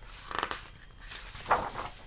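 Two short rustles of paper pages as a hardcover picture book is turned to the next spread.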